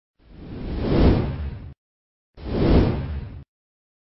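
Two whoosh sound effects, each swelling up to a peak and then cutting off abruptly, with a short silent gap between them.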